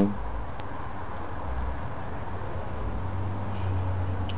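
Steady low hum under a faint even hiss: background room tone, with no distinct event.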